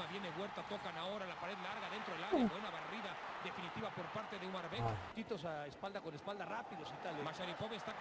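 A football commentator's voice talking continuously from the match broadcast, fairly quiet, with a short "uh" exclamation about two seconds in.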